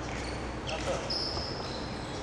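Sports shoes squeaking and stepping on a wooden court floor, with one longer high squeak about a second in.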